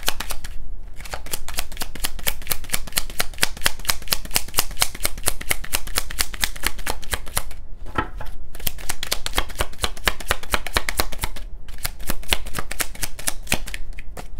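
A deck of tarot cards shuffled by hand: a rapid, dense run of light card clicks, broken by a few short pauses.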